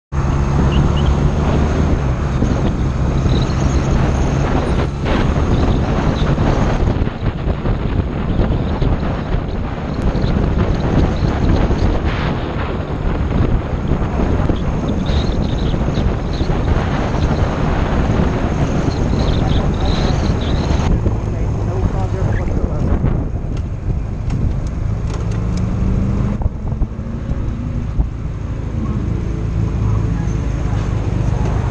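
Honda Rebel motorcycle engine running under way, with steady wind noise on the microphone. Past the two-thirds mark the wind drops away as the bike slows, and the engine note shifts up and down as it comes to a stop in traffic.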